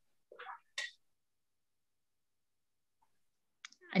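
Two brief faint clicks in the first second, then near silence.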